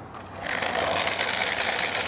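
Small electric motor of a remote-control toy car starting about half a second in and whirring steadily as the car drives off across concrete, after a couple of pecks on its metal food bowl.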